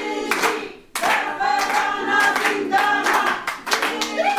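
A group of women singing together and clapping their hands in time, with a short break a little under a second in.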